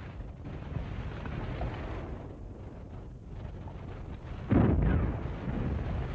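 Low rumble on an old film soundtrack, then a sudden heavy explosion about four and a half seconds in that fades out slowly.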